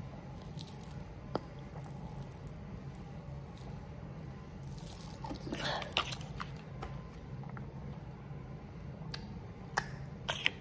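Soft squelching, biting and chewing mouth sounds as a plastic-wrap pouch of orange juice bursts in the mouth, over a steady low hum. A brief louder breathy sound comes about five to six seconds in.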